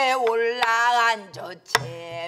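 Pansori singing: a woman's voice holding long, drawn-out notes with bending pitch, accompanied on a buk barrel drum. A sharp stick knock on the drum comes about two-thirds of a second in, and another, with a low thud from the drumhead, comes near the end.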